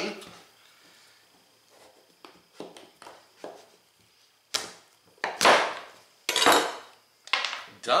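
Chef's knife cutting through the hard rind of an acorn squash: faint scrapes at first, then four loud crunching cracks about a second apart in the second half as the blade is rocked down and the squash splits in two.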